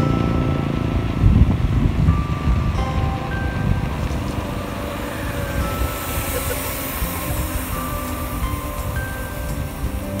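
Wind buffeting the microphone and road rumble from a bicycle rolling on a concrete road, with faint, scattered bell-like music notes underneath.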